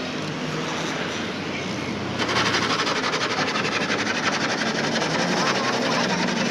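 A motor vehicle engine running close by with a fast, even rattling pulse, getting louder about two seconds in, with voices over it.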